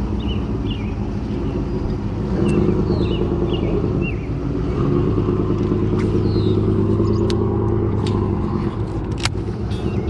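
Electric trolling motor running with a steady low hum. It grows louder a couple of seconds in and eases off near the end. Birds chirp over it, and a few sharp clicks come in the second half.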